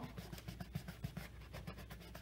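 Fingertips rubbing scotch tape down onto the bottom of a plastic bowl: a quick, faint run of small scratchy rubs and clicks.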